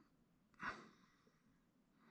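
A single short, breathy exhale from the person working, about half a second in, against near silence.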